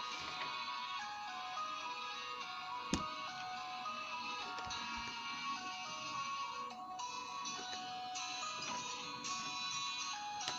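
Background music: a melody of clean, steady electronic notes stepping from one pitch to the next, with a single sharp click about three seconds in.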